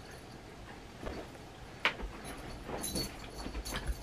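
Faint handling noises, soft clicks and a few light jingles as a small dog scrambles up onto the chair behind, with quiet chewing of a firm gummy candy. There is a sharp click about two seconds in and a low rumble of movement through the second half.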